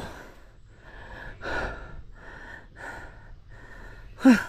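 A person breathing hard close to the microphone, a run of audible breaths in and out, the loudest about a second and a half in.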